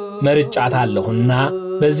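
A man speaking in Amharic in a measured, narrating delivery, over a steady held tone of background music.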